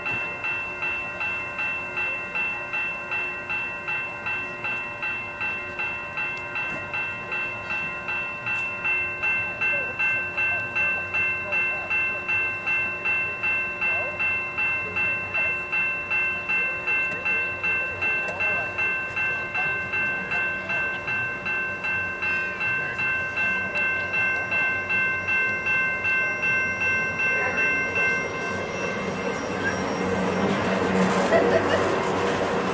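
Level-crossing warning bell ringing in an even beat of about two strokes a second, stopping near the end, over the low rumble of a Canadian Pacific GP20C-ECO diesel locomotive rolling slowly through the crossing.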